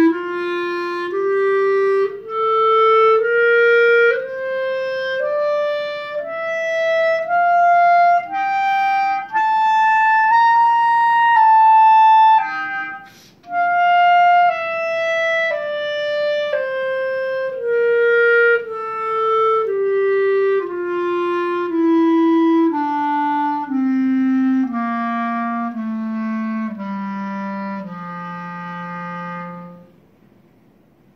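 Solo clarinet playing a slow scale, about one note a second: it climbs into the high register, breaks for a quick breath about 13 seconds in, then steps back down and ends on a low held note.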